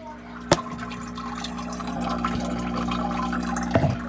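Aquarium water running and splashing, growing louder as it is heard up close, over a steady hum from the tank's equipment. A sharp knock comes about half a second in and another near the end.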